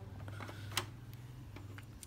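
A few faint clicks from hands handling a Sony CFS dual-cassette boombox's tape deck, over a low steady hum.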